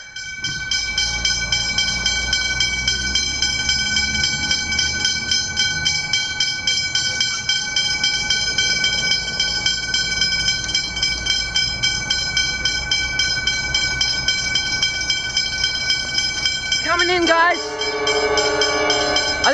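Westinghouse Hybrid electronic level-crossing bells ringing steadily and loudly, a rapid even train of ringing strokes, as the crossing activates for an approaching train.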